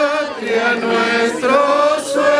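Voices singing a slow processional hymn in unison, with long held notes that move step by step through a clear melody.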